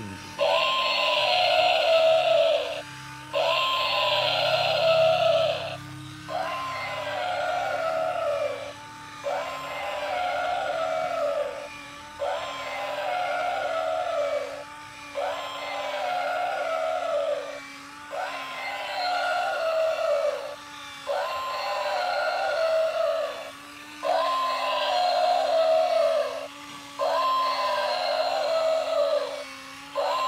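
Battery-powered walking toy mammoth's built-in sound chip playing a short electronic animal call through its small speaker. The call rises, then falls, and loops about every three seconds with brief gaps between repeats. A steady low hum from its walking motor runs underneath.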